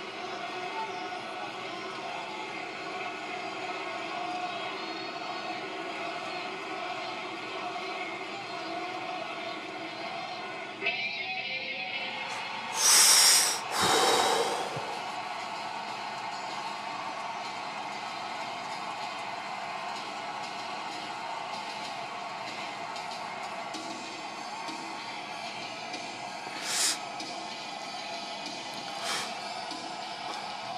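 Arena crowd noise and entrance music played through a television speaker, with two loud sharp bursts about halfway through and two fainter ones near the end.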